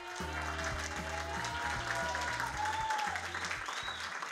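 Band music with steady bass notes under a crowd applauding.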